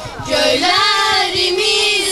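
Girls singing together in unison; after a brief breath, they hold one long note that bends slightly in pitch.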